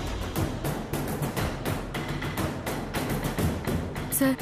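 Dramatic background score driven by a fast run of percussion hits.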